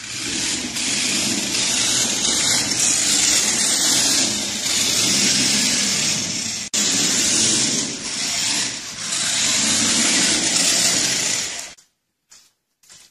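Battery-powered remote-control toy car driving on a hardwood floor, its motor and gears whirring and swelling and easing with the throttle. The sound breaks off for an instant a little past halfway, and stops abruptly near the end.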